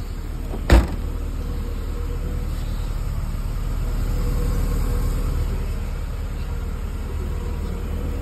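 A single sharp knock about a second in, over a steady low hum.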